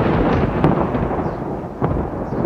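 A deep, noisy rumble that slowly fades, with a sharp crack near the end: a dramatic sound effect in the tail of a boom.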